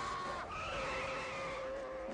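Car tyres squealing in one long, steady screech.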